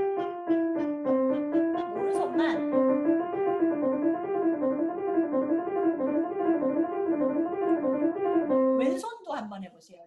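Yamaha grand piano playing a right-hand five-finger exercise on C-D-E-F-G in the middle register. It starts with slower single notes, then runs quickly up and down the five notes, and ends on a held note near the end. A woman starts talking right after.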